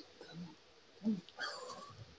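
Faint, short grunts and a strained breath from a man fighting the burn of a super-hot chilli drink he is trying to keep down: two low sounds in the first second, then a longer one.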